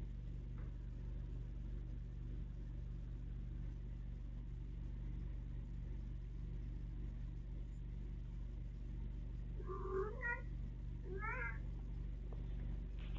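Domestic cat giving two short meows near the end, the cat's way of announcing a toy it has fetched and brought back. A steady low hum lies underneath.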